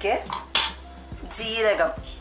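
A metal ladle clinks against a metal cooking pot of thick rice porridge, a sharp knock about half a second in, with a voice around it.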